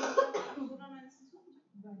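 A person coughing twice in quick succession, loud and abrupt, followed by faint talk.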